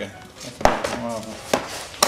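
A ring binder knocked down on a wooden worktable and its cover flipped open: a sharp knock about two thirds of a second in, then a smaller knock about a second later.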